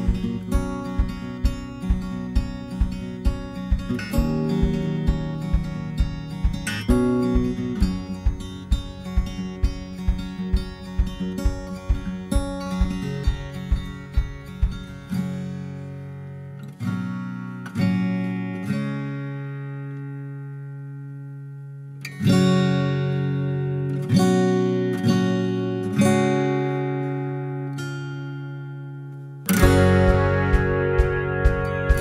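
Background music on acoustic guitar: a steady picked rhythm of about two notes a second that drops about halfway through to a few slow chords left to ring, then picks up again near the end.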